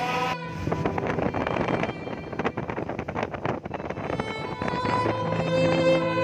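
Wind buffeting the microphone and water rushing past a moving boat, a rough noise with irregular crackles. String music fades in over it about four seconds in.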